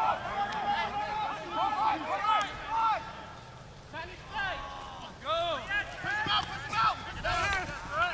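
Several men shouting short, overlapping calls during rugby play, with no clear words, over the field's open-air background.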